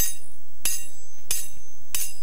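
Steel magician's linking rings struck together four times at an even pace, about two-thirds of a second apart, each clank ringing on with a high metallic tone.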